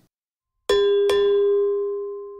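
A bell sound effect, struck twice in quick succession about two-thirds of a second in, then ringing and slowly fading.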